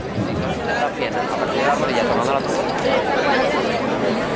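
Crowd chatter: many voices talking over one another at a steady level.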